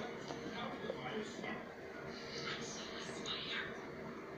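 Close-up chewing of a mouthful of breaded chicken sandwich: soft, irregular mouth sounds, over a faint steady hum.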